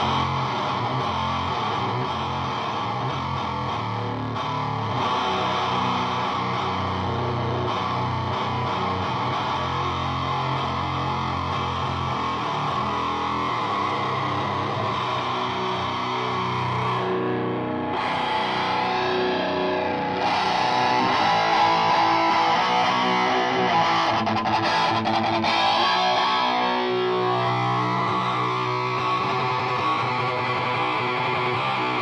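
Electric guitar played through a Fuzz Face-style fuzz pedal feeding a full-band HM-2 tonestack: a heavily distorted fuzz tone playing sustained low chords and riffs. Past the middle the tone shifts and the playing gets a little louder.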